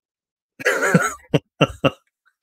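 A man clearing his throat and coughing: one longer rasp about half a second in, then three short coughs.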